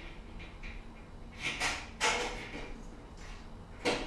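A door opening and shutting off-screen: a short scraping sweep about one and a half seconds in, then a sudden knock at two seconds that fades quickly.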